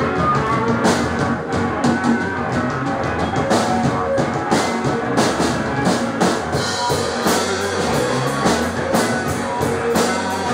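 Small rock band playing live on electric guitar, bass guitar and drum kit, with a steady drum beat.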